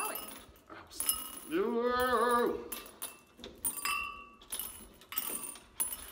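Skittles dropping into small drinking glasses: scattered light clicks and clinks, some leaving a short glassy ring. About two seconds in, a person's voice holds one note for about a second.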